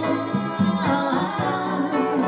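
Live music: singing with band accompaniment.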